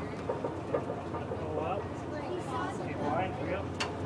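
Indistinct voices talking over a steady low hum, with one short sharp click near the end.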